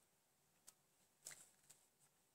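Near silence, with a few faint, short clicks of metal knitting needles as stitches are worked, the clearest a little over a second in.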